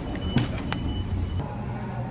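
A steady low mechanical hum with a faint high tone above it, both stopping about a second and a half in, and a couple of sharp clicks.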